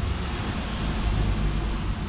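Steady low rumble of outdoor background noise with no distinct events.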